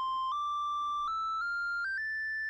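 Moog Subharmonicon oscillator holding a steady high tone that jumps up in pitch in small steps, about five times, as a sequencer step knob is turned. The range is set to five octaves, so each knob step is tiny and hard to land on.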